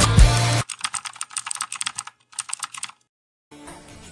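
Background music cuts off abruptly, followed by a keyboard-typing sound effect. It is a quick run of light clicks, about ten a second, then a short pause and a shorter run, ending in silence.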